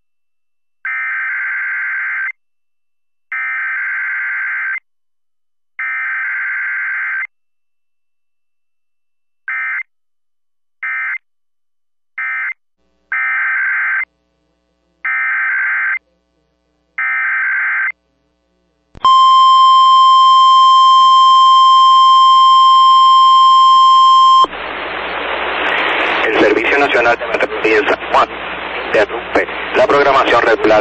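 Emergency Alert System SAME data bursts: three long header bursts, three short end-of-message bursts, then three more long header bursts, each a harsh warbling screech. These are followed by a single steady alert tone of about 1050 Hz lasting about five seconds, which gives way near the end to a voice through heavy radio static.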